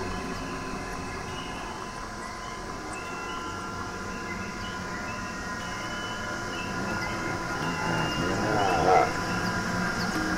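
Live-coded experimental electronic music: a dense, droning layer of processed sampled sounds with steady held tones and short repeating chirps. It grows louder near the end, with a brief peak about nine seconds in.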